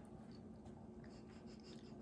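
Near silence, with faint soft mouth noises and small ticks of people chewing gummy candy.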